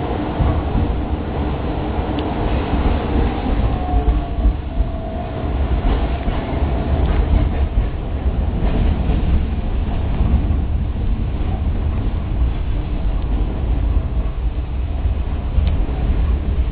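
Tatra T6A2D tram running along its track, heard from inside at the front: a steady low rumble of the wheels and running gear. A faint whine comes and goes about four to six seconds in, and there are a few light clicks along the way.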